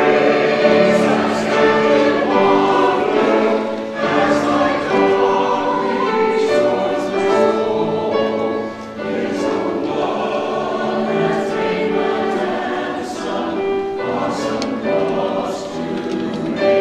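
A mixed church choir of men's and women's voices singing an anthem in parts, with long held notes.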